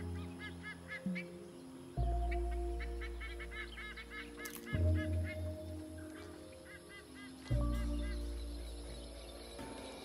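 Goose-like honking of wetland birds in several quick runs of repeated calls, over a film score of long, low notes, each struck about every two and a half to three seconds and slowly fading; the low notes are the loudest sound.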